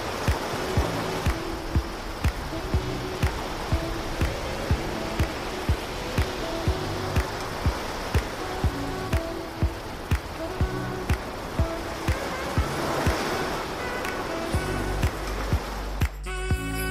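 Background music with a steady beat of about two strokes a second and held bass notes, over an even wash of surf.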